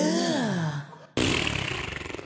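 A man's long drawn-out groan, 'uuhhhhggggh', sliding down in pitch over about a second. It is followed, after an abrupt cut, by a steady hissing noise.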